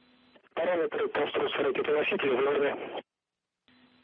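A voice speaking over a narrow, radio-quality communications loop for about two and a half seconds, then the audio drops out to dead silence briefly before the next call.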